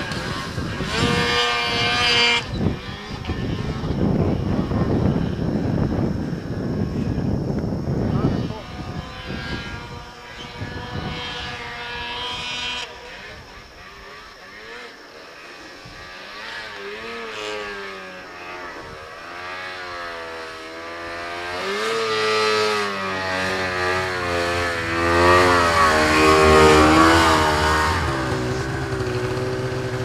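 Two-stroke mountain snowmobiles running hard through deep powder, engine pitch sweeping up and down as the throttle is worked and the sleds carve around. The engine sound is loud for the first several seconds, falls away in the middle, then builds again to its loudest as a sled comes close near the end.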